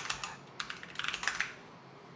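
Typing on a computer keyboard: a quick run of keystroke clicks that stops about one and a half seconds in.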